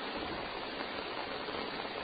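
Steady hiss from the noise floor of a field audio recording being played back, with no distinct sound in it.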